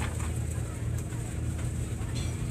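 An engine idling steadily nearby, an even low hum with no change in speed.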